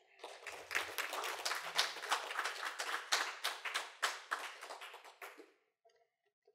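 A small audience clapping for about five seconds, then dying away. The claps are closely packed but can still be heard one by one.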